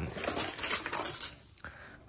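Steel hand tools clinking and rattling against one another as a long ratchet handle is drawn out of a heap of them. The clatter stops about a second and a half in.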